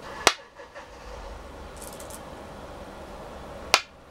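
Two go stones set down on a wooden go board, each with one sharp clack, the second about three and a half seconds after the first.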